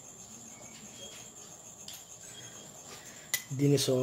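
Quiet room tone with a faint, steady, high-pitched pulsing trill. A single sharp click comes a little after three seconds in, followed by a short burst of voice at the end.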